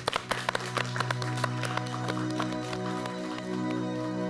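Studio audience applauding over held chords of soft music. The clapping is dense at first and thins out during the second half while the music carries on.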